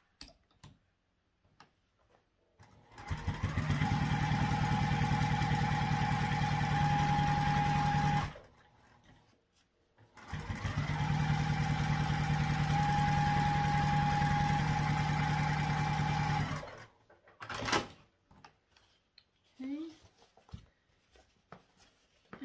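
Domestic electric sewing machine stitching a curved seam through layered bag panels in two runs of about five and six seconds. Each run speeds up to a steady rapid needle rhythm with a motor whine, with a short pause between them. A single sharp click comes a little after the second run.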